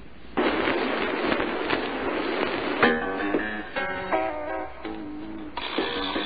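A recorded soft-rock song played back. It comes in about half a second in with a dense wash, and plucked guitar notes stand out from about three seconds in.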